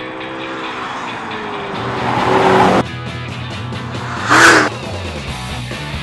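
McLaren MP4-12C twin-turbo V8 supercar passing at speed, over music. The car's sound swells over a couple of seconds and cuts off abruptly. A second short, loud pass-by follows about four and a half seconds in.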